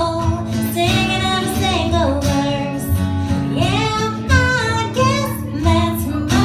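A woman singing a country song live over a strummed acoustic guitar, with low bass notes from a washtub bass.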